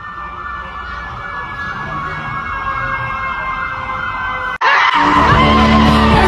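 A steady, warbling siren-like tone that grows gradually louder, then cuts off abruptly about four and a half seconds in, when pop music with singing starts.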